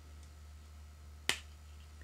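A single sharp click about a second in: a rubber-and-plastic side shield of Julbo Explorer 2.0 sunglasses snapping out of the frame's hinge. A faint low hum runs underneath.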